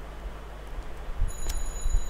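A few computer keyboard keystrokes over a steady low hum. Near the end a faint, thin high-pitched ringing tone comes in.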